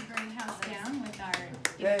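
People chatting, with a few scattered hand claps. A woman starts speaking into the microphone near the end.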